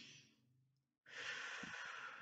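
A woman's slow, deep belly breaths, taken as a calming-down exercise: the tail of one breath fades out, then after a short pause another long, breathy breath follows.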